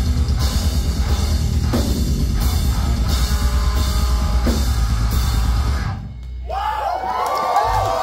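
Live heavy band playing at full volume, with pounding drums and crash cymbals driving the guitars. About six seconds in the music drops out briefly, then wavering, bending tones ring out over a low hum.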